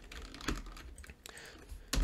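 Computer keyboard keys clicking: a few scattered keystrokes, the clearest about a quarter of the way in and another just before the end.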